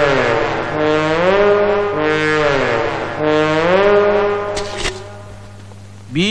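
Comic background music: a low brass horn playing long held notes that slide down and back up in pitch, three swoops, fading out about five seconds in.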